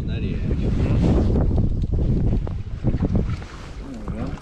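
Wind buffeting the microphone: a heavy low rumble that eases off about three seconds in.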